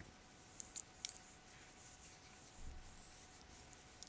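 Faint handling of knitting: a few light clicks of metal knitting needles in the first second and a soft rustle of yarn near the end as the knitted piece is turned over.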